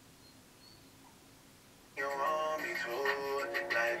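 Faint room tone, then about halfway through a pop song with singing starts abruptly, streamed radio playing from a HiMirror smart mirror's built-in speaker.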